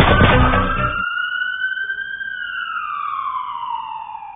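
A loud hit with a rush of noise, then a single slow siren wail that rises for about a second and falls away over the next few seconds, used as a sound effect.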